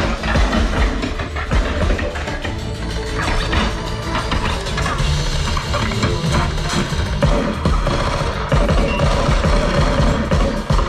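Film soundtrack, music with heavy deep bass, played loudly through a home-theater speaker system with Swan front speakers and picked up by the microphone in the room.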